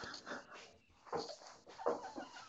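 A man laughing breathily in short irregular bursts, with no words.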